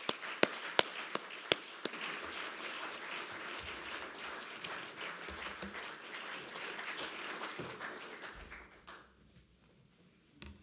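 Small audience applauding, starting with a few separate loud claps, then steady clapping that dies away about nine seconds in.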